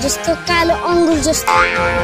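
A boy's voice speaking over background music.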